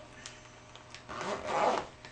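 Zipper being drawn closed around a SpaceMaker zippered case: a faint rasp at first, then a louder stretch of zipping about a second in.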